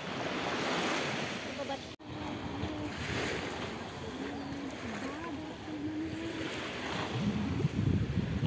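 Small waves washing and lapping in the shallows right beside the microphone, swelling and fading in gentle surges, with wind on the microphone. The sound breaks off for an instant about two seconds in.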